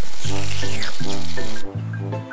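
Cartoon water-spray sound effect: a loud, steady hiss of a hose jet that cuts off suddenly about one and a half seconds in, over background music.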